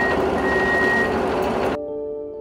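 An electronic warning beeper sounding high, steady, long beeps with short gaps, over a steady rushing and humming of underground machinery. Both stop abruptly near the end, giving way to soft music.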